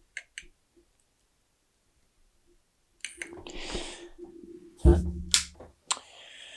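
Faint clicks from an XLR plug and cable being handled, then a pause. Rustling follows, then a thump and a couple of sharp clicks as the plug and cable are set down on the workbench.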